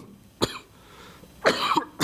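A man coughing to clear his throat into a microphone: a short sharp cough about half a second in, then a longer throat-clearing cough about a second and a half in.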